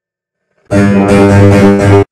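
A short, loud burst of strummed guitar music. It starts after a silent gap and cuts off suddenly about a second later.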